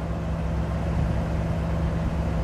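The 1959 Ford Fairlane 500 Galaxie Skyliner's 332 cubic-inch V8 idling steadily.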